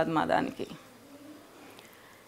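A woman's voice stops about half a second in, leaving a quiet room in which a faint, short, low cooing call of a dove sounds in the background.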